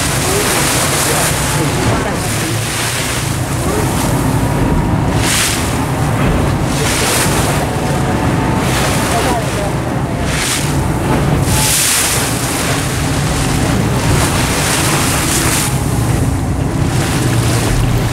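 Wind buffeting the microphone in gusts over the steady low hum of a boat's engine, with waves washing against the hull.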